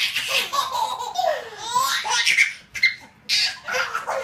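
Babies laughing together in repeated bursts of giggles and belly laughs, with a short break about three seconds in before the laughter picks up again.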